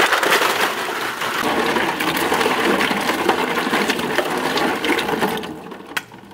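Tap water pouring into a steel tray of snails as they are washed, with the shells clicking and scraping against each other and the tray. The noise quietens sharply near the end.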